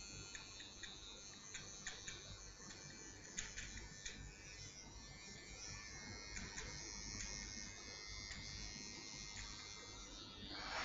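Faint buzz of a small electric hair trimmer tidying the hairline at the nape, with scattered light clicks.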